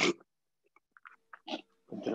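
A person's short, forceful breath out, through the nose or mouth, at the very start, followed by a few faint clicks.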